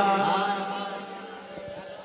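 A man's held sung note in a naat, heard through a microphone and PA, dying away slowly until only a faint trailing tone is left near the end.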